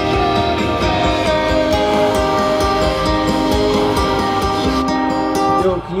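Guitar-led music playing: strummed guitar chords ringing on in sustained notes. It starts abruptly and stops shortly before the end.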